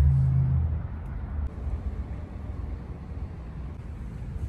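Low, uneven outdoor rumble, loudest in about the first second and then steady.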